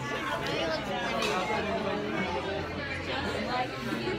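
Indistinct chatter of other people talking in the background, steady and unbroken.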